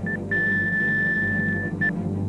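Heart-monitor sound effect: a short beep, then a long steady flatline tone of the same pitch lasting about a second and a half, then a single beep again near the end. The flatline is the sign of a stopped heart. A low sustained musical drone runs underneath.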